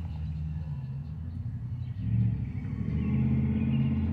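A car engine running steadily, a low hum that grows louder about halfway through.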